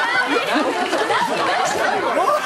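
Several people talking over one another at once, a steady tangle of overlapping voices with no single speaker standing out.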